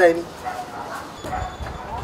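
A man's voice breaks off at the start, followed by a few faint, short dog barks in the background.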